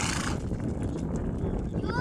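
Several horses walking on dry dirt, their hoofbeats soft against a low rumble of wind on the microphone. Faint voices and a brief rising call come near the end.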